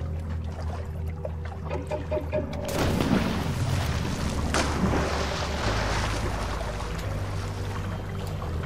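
Oars dipping and splashing as a small inflatable raft is rowed across still water. The splashing swells from about a third of the way in, over a low steady hum.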